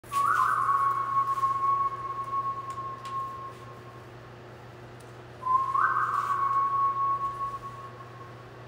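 Whistling: two long held notes, each opening with a quick slide up, then dropping back and fading away over about three seconds; the second begins about five and a half seconds in.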